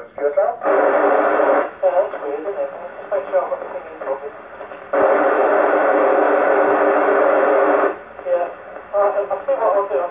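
A weak voice over the Yaesu FT-991 transceiver's speaker on two-metre FM, breaking up and not clear. Loud bursts of static hiss cover it twice, briefly about half a second in and then from about five seconds to eight. The signal comes from a portable station testing a handheld's transmit.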